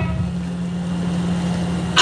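A steady, engine-like low hum with no speech over it.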